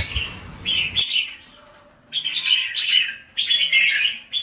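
Caged red-whiskered bulbul singing in short, bright, chirpy phrases: a brief one about half a second in, then two longer runs from about two seconds in.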